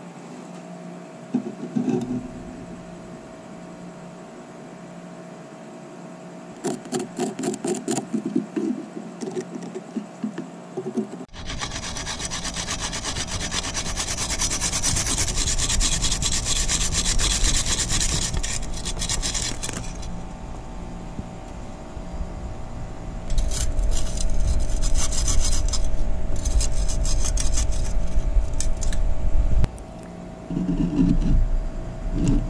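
A metal hand-tool blade scraping and cutting back and forth through the dried clay of an earthen oven dome. It comes in quick rasping strokes: short bursts a quarter of the way in, a longer scraping stretch in the middle, and louder fast strokes near the end.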